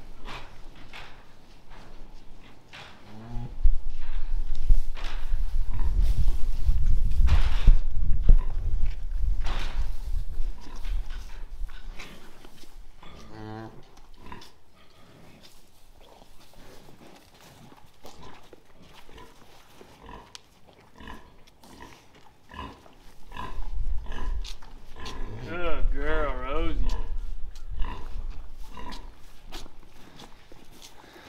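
Jersey cow calling to her newborn calf: three short low calls with a wavering pitch, the last and loudest near the end. Two long stretches of loud low rumbling noise come with them, one early on and one near the end.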